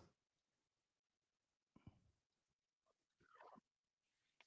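Near silence, broken only by two faint, brief sounds, about two seconds and three and a half seconds in.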